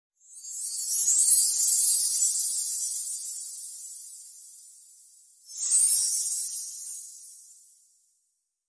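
Two airy, high-pitched whoosh-and-shimmer sound effects from an animated intro. The first swells up within the first second and fades away slowly. The second comes in suddenly about five and a half seconds in, with a quick falling sweep, and fades out by the end.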